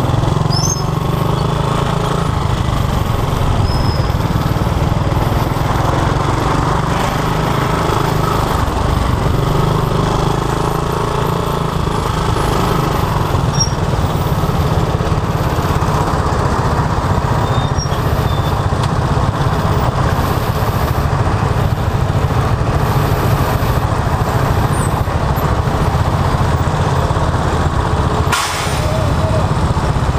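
Motorcycle engine running steadily at low speed in slow, heavy traffic, mixed with the engines of the motorcycles, motor tricycles and truck around it.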